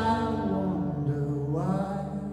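A man singing a long held, wordless note into a microphone over a ringing acoustic guitar chord; the voice slides up in pitch about one and a half seconds in.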